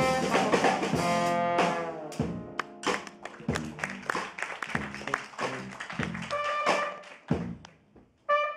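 Live jazz band: trombone, trumpet and saxophone hold notes together over drum kit and piano for about two seconds, then drop out, leaving drum strokes and low piano and bass. A short horn note sounds about six and a half seconds in, and the music falls almost silent at the very end.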